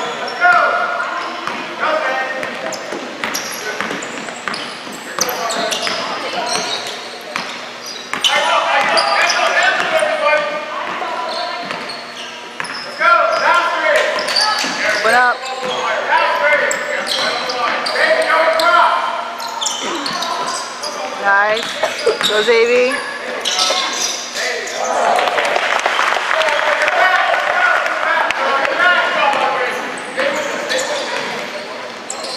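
Basketball being dribbled and bouncing on a hardwood gym floor during a youth game, with many overlapping voices of players and spectators calling out, echoing in a large gym.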